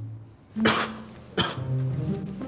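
A man sneezing twice, a long loud sneeze about half a second in and a shorter one after it: an allergic reaction to pollen from a bouquet of roses.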